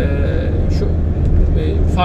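Steady low rumble of road and engine noise inside a car cruising at motorway speed.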